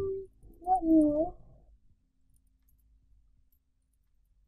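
A person's short wordless vocal sound in two parts in the first second and a half: a held note, then a wavering one. The rest is near silence.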